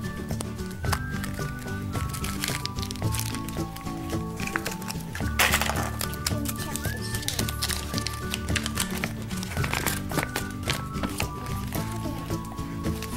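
Background music: a melody of stepped notes over a bass line. Brief clicks and rustling of plastic packaging being handled sound over it, with one louder rustle about five seconds in.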